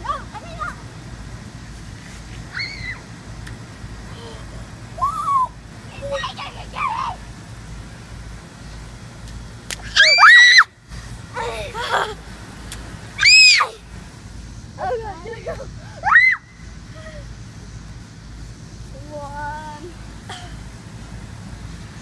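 Children shrieking and squealing in excitement, with three loud, high-pitched screams about ten, thirteen and sixteen seconds in and shorter calls between them, over a steady low hum.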